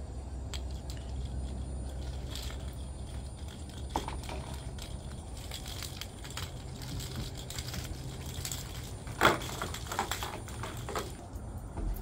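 Bulbs and wiring of an LED string-light strand clicking and rattling against each other as the tangled strand is handled and pulled out, with a sharper clatter about nine seconds in. A low steady rumble runs underneath.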